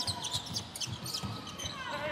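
A basketball being dribbled on a hardwood court, a steady run of bounces.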